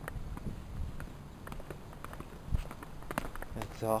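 Footsteps on a concrete path and steps: irregular scuffs and taps, with a heavier thud about two and a half seconds in.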